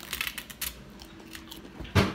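Crisp crunching clicks of a chicken nugget being bitten into, a few quick snaps in the first moment, then a single loud dull thump near the end.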